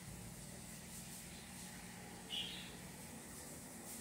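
Quiet room tone with a faint steady low hum. One brief, soft, high-pitched sound comes a little past halfway.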